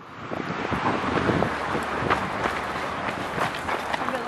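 Wind rushing over a handheld camera microphone, with irregular footfalls on a dirt path as people run.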